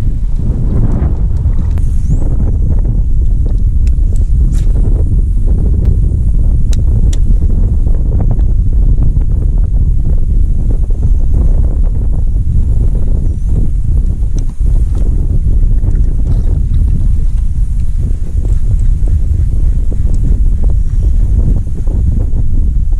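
Wind buffeting the camera microphone: a loud, steady low rumble, with a few faint clicks.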